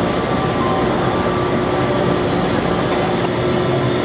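Combustion furnace running during a test firing, with its connected exhaust-gas CO2 scrubber equipment: a loud, steady machine noise with a faint steady hum in it.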